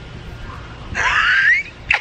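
A woman's high-pitched squeal of excitement about a second in, rising in pitch, followed by a short burst of laughter near the end.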